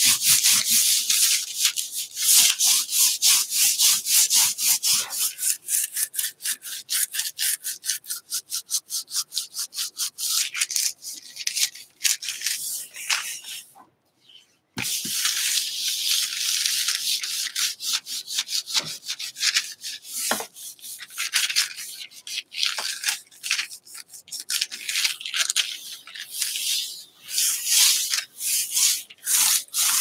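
Hands rubbing back and forth over a sheet of paper laid on an inked gel printing plate, burnishing it to pull a print: rapid, repeated dry rubbing strokes that stop briefly about halfway through.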